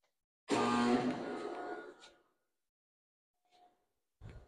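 A sudden ringing sound with a steady pitch, starting about half a second in and dying away over about a second and a half.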